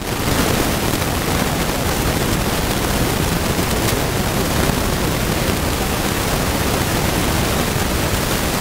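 Loud, steady hiss of static noise drowning out the recording, with no voice audible through it; it starts abruptly and cuts off suddenly, like an audio glitch or a dropout filled with noise.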